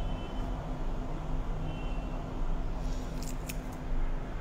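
Steady low background hum, with a few short crinkling rustles about three seconds in from the foil-wrapped henna cone being handled as it is lifted away from the paper.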